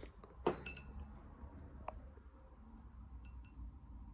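Faint handling of a steel bar: a light metallic clink about half a second in, ringing briefly, and a softer ring around three seconds in.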